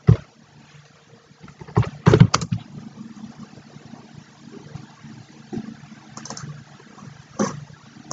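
Scattered computer keyboard and mouse clicks, a few short taps, over a faint steady low hum.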